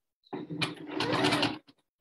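Necchi HP04 electronic sewing machine stitching a decorative star stitch, the needle running fast with a steady motor hum. It starts a moment in and stops after about a second and a quarter.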